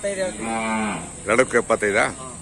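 Hallikar cattle lowing: one long, even-pitched moo, then louder, broken calls in the second half.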